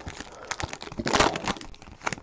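Foil wrapper of a Bowman Draft baseball card pack crinkling as it is torn open by hand, in irregular crackles with a louder rip about a second in.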